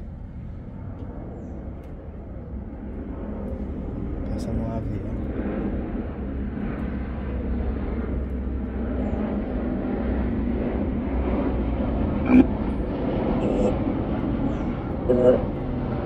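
Spirit box radio scanner sweeping through stations: a steady hiss of radio static that slowly grows louder. A single click comes about twelve seconds in, and faint broken fragments of voice come through near the end.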